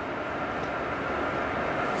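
Steady mechanical background noise with a faint hum, growing slightly louder toward the end.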